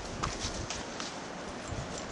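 Footsteps of a walker on a stony path, a few uneven steps over a steady background hiss.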